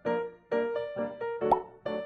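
Light background music of short, evenly paced keyboard-like notes, with a single sharp pop sound effect about one and a half seconds in.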